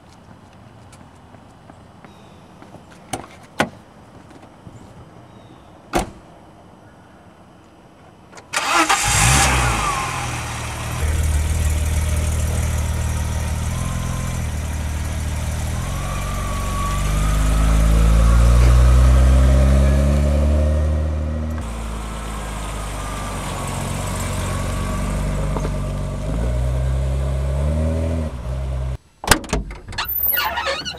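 A few sharp clicks, then a BMW E30 car engine starts suddenly about eight seconds in and keeps running, its note rising and falling several times as the car is revved and driven off.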